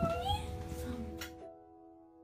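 A woman's brief, wavering high crying wail in the first half-second, the sob of someone overcome on hearing for the first time, over soft background music of held notes that fade away about a second and a half in.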